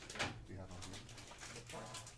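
Cardboard trading cards from a 1989 Fleer basketball pack being handled and flipped by hand, with one sharp click about a quarter second in, over a low steady hum.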